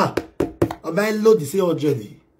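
A man talking loudly in a lively, rapid way, with a quick run of sharp knocks in the first second.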